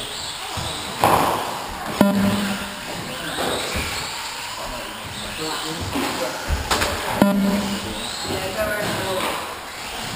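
1/18-scale electric RC cars racing on an indoor board track, with voices in an echoing hall. Two sharp knocks, about two and seven seconds in, each ring briefly.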